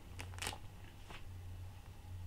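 Faint, short rustles of a clear cellophane bag being handled, a few near the start and one about a second in, over a low steady hum.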